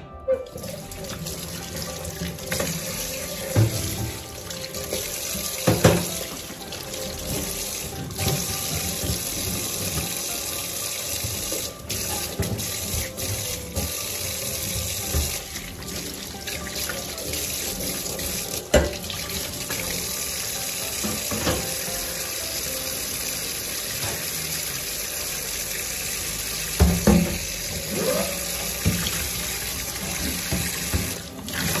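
Kitchen tap running steadily into a stainless steel sink as gas-hob burner caps and a metal pan support grate are scrubbed and rinsed under it. Several sharp knocks of the metal parts against the sink, the loudest about six seconds in, near the middle and near the end.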